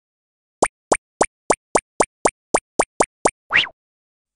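Cartoon sound effects for an animated intro: a run of eleven short pops at nearly four a second, then a quick rising swoop near the end.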